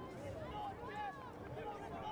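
Stadium crowd and players cheering and shouting after a goal: several voices at once, faint and overlapping.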